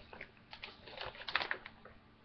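A few light clicks and taps from handling the plastic parts of an Earthbox planter kit: one near the start and a quick cluster about a second in.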